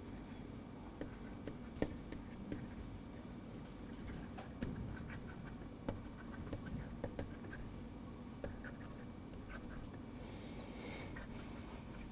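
Faint tapping and scratching of a stylus writing on a tablet surface: short strokes and light clicks as handwriting is put down.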